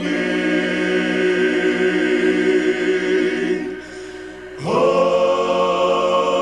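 Men's gospel vocal group singing a cappella in close harmony, holding one long chord, then easing off briefly before a new chord swells in with an upward slide about four and a half seconds in.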